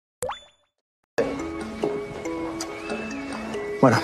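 A short rising pop-like sound effect, then about half a second of silence, then background music with a simple melody of short held notes. A voice comes in right at the end.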